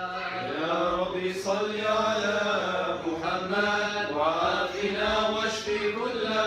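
Men chanting a mawlid in Arabic, devotional verse in praise of the Prophet, in a slow melody with long held notes and no drum accompaniment.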